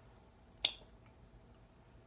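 A single sharp click about two-thirds of a second in, as the cap is pulled off a glass perfume bottle, followed by a much fainter tick.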